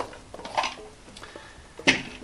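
Screw-off bottom cap of a battery-powered LED camping lantern being unscrewed with faint rubbing and handling noises, then a single sharp clack near the end as the cap is set down on the table.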